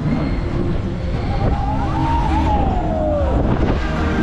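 On board a swinging pendulum ride: a steady rush of air and low rumble as the arm swings high, with a whine that rises and then falls in pitch through the middle of the swing.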